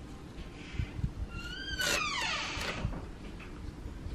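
A short, high-pitched squeak with overtones, about a second and a half long, that rises slightly and then slides down in pitch, starting a little over a second in. Soft low knocks sit underneath.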